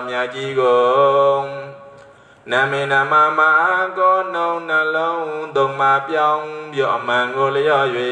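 A Buddhist monk's voice chanting in a slow, melodic recitation with long drawn-out notes, through a microphone. There is a short pause about two seconds in.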